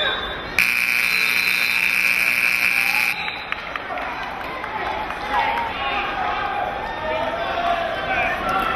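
A gym scoreboard buzzer sounds once, starting suddenly and holding steady for about two and a half seconds before cutting off. Crowd noise and shouted voices fill the hall around it.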